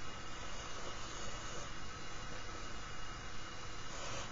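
Steady, even hiss: the recording's background noise, with no distinct strokes or clicks.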